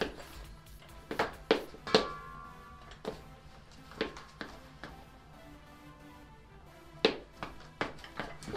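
Sharp metal clanks and knocks, about nine of them spread unevenly, from a breaker bar and 54 mm socket heaved against the flywheel nut of a Mazda RX-8 rotary engine whose flywheel is held by a locking bracket. One clank about two seconds in leaves a ringing tone. Music plays faintly underneath.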